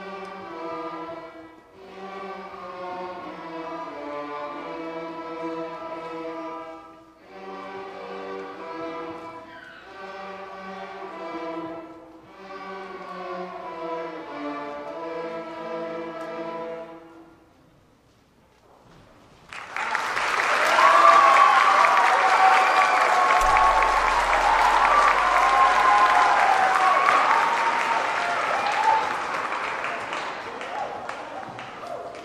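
Elementary-school string orchestra of violins, cellos and basses playing the closing phrases of a piece, which ends about 17 seconds in. After a short hush, the audience breaks into loud applause that continues to the end.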